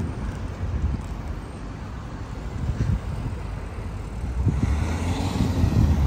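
Road traffic on a residential street: cars driving past, with one passing close and louder near the end.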